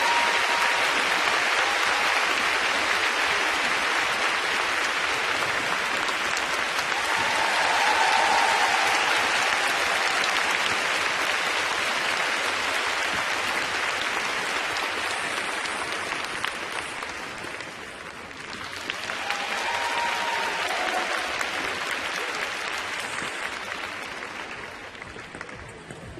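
Large arena crowd applauding, a dense steady clapping that swells about eight seconds in, dips, rises again briefly and then fades away near the end.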